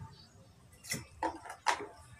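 A person drinking from a plastic water bottle: a few short gulps and clicks from about a second in, the loudest a sharp click near the end as the bottle comes away from the mouth.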